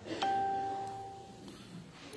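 A single bell-like ding that rings out and fades over about a second.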